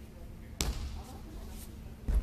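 A body hitting the tatami mat as an aikido partner is thrown down, a single sharp thud about half a second in.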